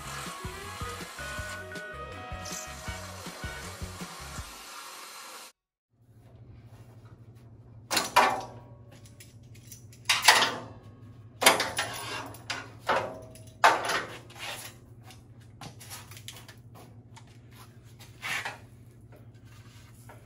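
Background music for the first five seconds, cut off by a moment of silence. Then a run of sharp metallic clanks and rattles as a steel sheet-metal panel and its locking-plier clamps are undone and handled, over a steady low hum.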